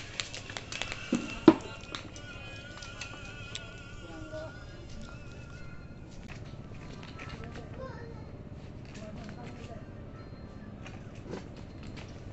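A bamboo pole knocking against the branches of a fruit tree: a quick series of sharp knocks, with the loudest, deepest thump about a second and a half in, then only scattered faint clicks.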